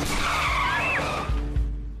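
Car tyres skidding on asphalt under hard braking, a screech that fades out after about a second and a half.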